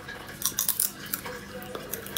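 Sunflower seeds being cracked between the teeth: a quick cluster of sharp clicks about half a second in, then a couple of single clicks.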